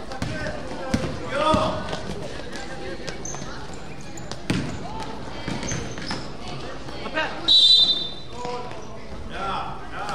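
Youth basketball game in a gym hall: a basketball bouncing on the court, scattered knocks and shouting voices. A short, sharp referee's whistle blast about three-quarters of the way through is the loudest sound.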